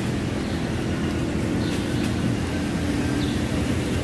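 Steady low machine hum, an even drone without change.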